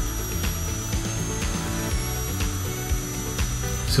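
Air-driven high-speed dental handpiece whining at a steady high pitch as its diamond bur cuts tooth, removing decay and shaping the crown margin; the pitch sags a little about halfway through. Background music plays underneath.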